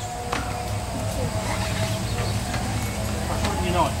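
Indistinct talking over a steady low rumble, with a single knock about a third of a second in and a voice saying "Oh" at the very end.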